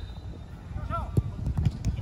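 Footsteps jogging on artificial turf, a steady run of dull thuds with a few sharper clicks. A player gives a short shout about a second in.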